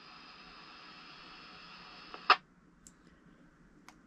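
Yaesu VX-6R handheld radio's speaker hissing with received static after the other station stops talking, cut off by a sharp click a little over two seconds in as the squelch closes. Then near silence with a couple of faint clicks.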